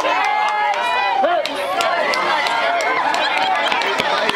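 Many young voices of players and spectators calling out and cheering over one another, some shouts drawn out long, with scattered short sharp sounds among them.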